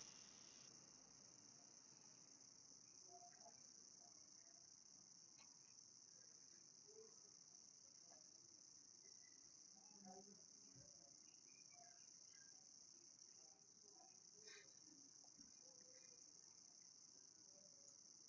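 Near silence, with only a faint, steady high-pitched hiss.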